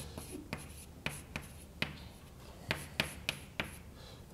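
Chalk writing on a blackboard: a run of irregular sharp taps and short scratches as symbols are written.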